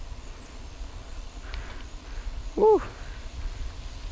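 Low, steady rumble of a BMX bike's tyres rolling on asphalt, mixed with wind on the microphone, and a short "ooh" exclamation about two and a half seconds in.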